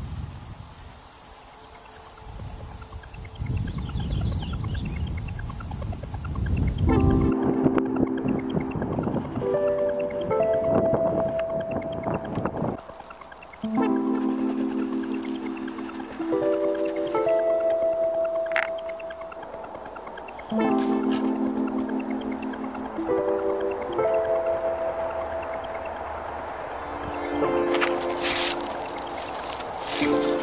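Wind noise on the microphone outdoors for the first several seconds, then instrumental background music comes in suddenly about seven seconds in: sustained chords that repeat in phrases every six or seven seconds.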